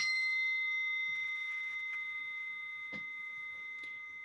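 A meditation bell struck once, ringing with several clear, steady tones that fade slowly, marking the close of a silent meditation sitting. A couple of faint clicks are heard about three seconds in.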